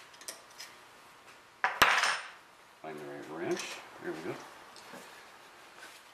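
Metal hand tools clinking on the outboard's lower unit as a socket is set onto the shift-shaft lock nut: a couple of faint ticks, then one sharp metallic clink with a short ring about two seconds in.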